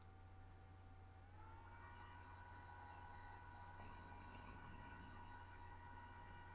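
Near silence: a low steady hum and a faint steady tone that slides up a little in pitch about a second in, then holds.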